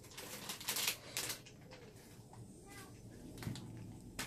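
Crinkling of a plastic bag of mini marshmallows as it is torn open and handled, in short bursts, the loudest in the first second or so and another shortly before the end.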